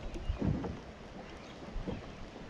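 Small waves lapping and slapping against a boat's hull, with wind on the microphone; the loudest slap comes about half a second in and another near the end.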